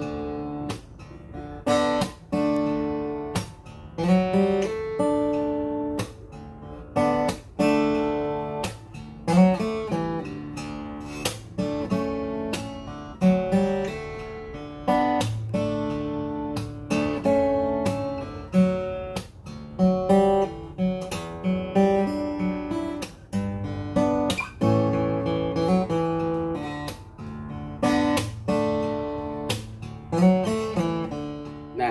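Tanglewood TWJ DCE dreadnought cutaway acoustic guitar with a solid cedar top being played. Chords and single notes are picked and strummed with sharp attacks, each ringing out before the next.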